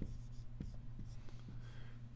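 Dry-erase marker writing on a whiteboard: a quick run of short, quiet scratchy strokes as a word is written out.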